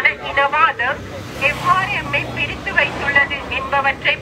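Speech: a woman addressing a crowd in Tamil through a handheld microphone, with a low steady hum in the background.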